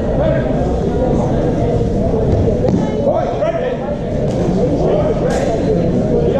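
Indistinct people's voices talking in a large sports hall, with its echo.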